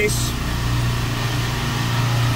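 A steady, low machine hum, even in level throughout.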